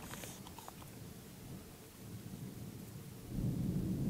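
Quiet outdoor background with a few faint clicks. About three seconds in, a low rumble of wind buffeting the microphone rises.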